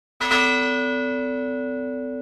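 A single bell struck once, a fraction of a second in, then ringing on and slowly fading, its high overtones dying away first.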